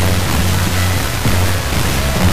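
Music with a repeating bass line from El Paso FM station KOFX 92.3, received about 1,175 miles away by sporadic-E skip, with a steady static hiss over it from the weak long-distance signal.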